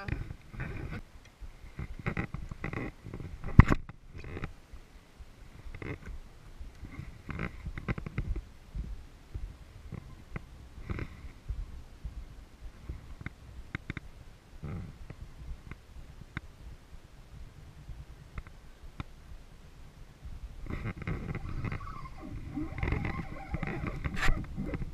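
Low rumble of wind and water on the microphone, with scattered knocks and clicks from the plastic kayak and fishing rod being handled; one sharp click about four seconds in is the loudest.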